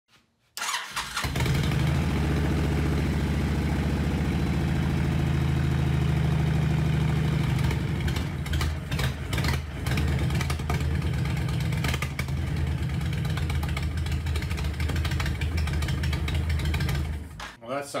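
2009 Honda VTX1300 V-twin starting and running, steady at first and then stumbling and uneven from about halfway, before it stops near the end. It sounds bad. This is typical of a fuel problem on the carburetor's pilot circuit, compounded by vacuum leaks and a faulty vacuum-actuated petcock.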